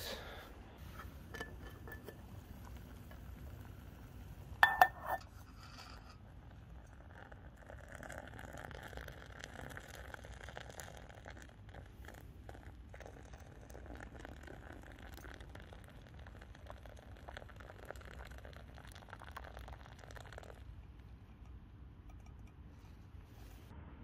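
A few sharp metal clinks of camping cookware about five seconds in, then hot water poured steadily from a camping pot into a cup of coffee for about thirteen seconds, stopping suddenly near the end.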